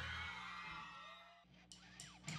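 Rock band's amplified electric guitars ringing out and fading to a faint steady amp hum, with a few sharp clicks near the end.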